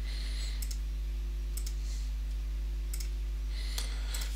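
Computer mouse clicking several times at uneven intervals, over a steady low hum.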